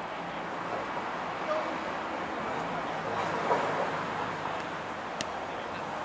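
Steady outdoor background noise with faint, distant shouts of rugby players during play, and one sharp click near the end.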